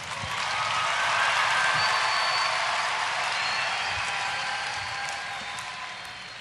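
Audience applauding, swelling over the first second or so and then slowly fading.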